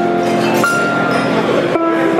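Concert pedal harp playing a slow melody, its plucked notes left ringing and overlapping, with a new note about half a second in and another near the end.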